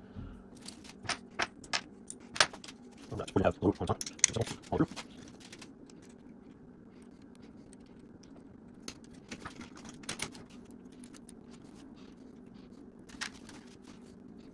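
Light clicks and rattles of the screen-mount hardware being handled and fitted: bolts and the mount's arm pieces knocking against each other and against the rail's end plate. The clicks come in quick clusters over the first few seconds, then a few more scattered later.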